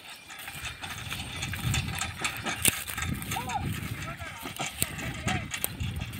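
Pair of Ongole bulls pulling a small two-wheeled giraka cart across a dry stubble field: uneven clatter of hooves and the cart rolling over rough ground, with short high calls a few times in the second half.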